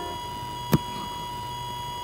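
A single sharp click or knock about three quarters of a second in, over a steady faint electronic hum with thin whining tones.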